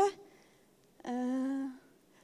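A woman's filled pause, a drawn-out 'yyy' held on one steady pitch for most of a second, about a second in.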